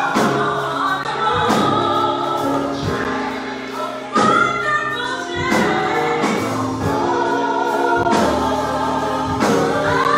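Gospel singing by a small group of singers over instrumental accompaniment, sustained voices moving from note to note above a steady bass line.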